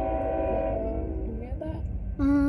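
Diesel locomotive's multi-chime air horn holding one steady chord, which cuts off about a second in, over a low rumble.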